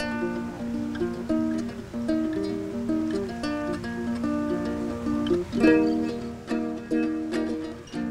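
Cavaquinho playing a solo song intro: a picked melody of short notes, then fuller strummed chords from about two seconds before the end.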